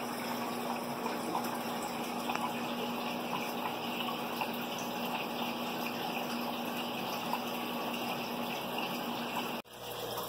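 Aquarium water running steadily, with a low pump hum, from the flow that feeds a hang-on breeder box of pleco fry. The sound cuts off abruptly shortly before the end.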